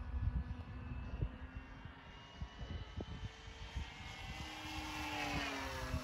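The 2216 brushless electric motor and 10x7 propeller of an RC airplane on 4S power buzzing in flight. Near the end the sound swells, and its pitch rises then falls as the plane manoeuvres overhead.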